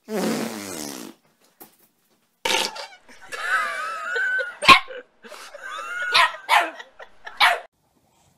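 A dog growls for about a second. After a short pause a small terrier puppy barks in a run of high-pitched yips and whining calls whose pitch rises and falls, with several sharp barks near the end.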